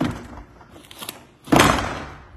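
Glass patio door panel being pushed along its track: a knock at the start, then a loud thud about a second and a half in as the panel seats in the track.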